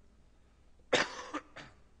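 A man coughing: one sharp, harsh cough about a second in, followed by a weaker second cough.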